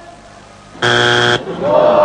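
Game-show wrong-answer buzzer sounding once for about half a second, about a second in, signalling that the answer is not on the survey board. Right after it, an 'Ồ' of disappointment.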